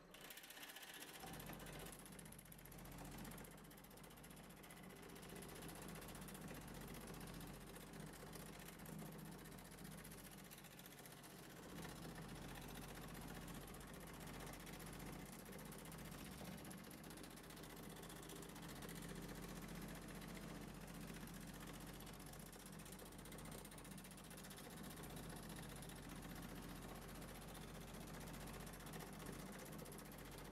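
Pullmax reciprocating metal-shaping machine running steadily, its shrinking dies rapidly working a sheet-metal flange to shrink it; a quiet, continuous mechanical chatter over a low motor hum.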